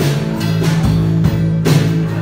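A live worship band playing: steady bass guitar notes, guitar and a drum kit, with a few drum hits.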